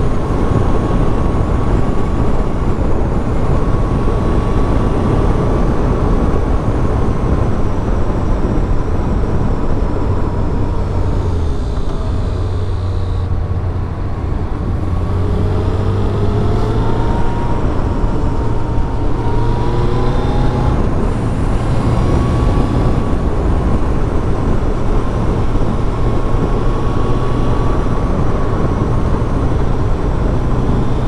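1999 Suzuki Hayabusa's inline-four engine running at road speed, mixed with heavy wind rush on the helmet microphone. The engine note drops near the middle, then climbs again in several short rises before settling.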